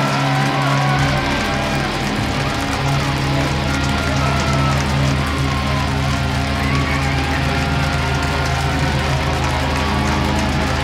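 Live, loud rock band: distorted electric guitars held on a sustained, droning chord through the amps, with a deep bass note coming in about a second in.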